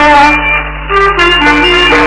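Old 1940s Tamil film song recording in Carnatic style, in an instrumental passage. A brief lull about half a second in is followed by a melody of single held notes stepping up and down.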